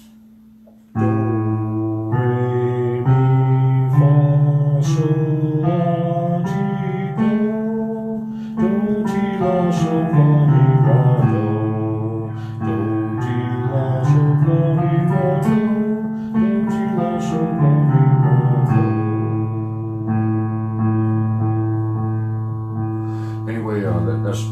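Roland electronic keyboard playing held notes and chords that change every second or two, starting about a second in, with a man's voice singing along.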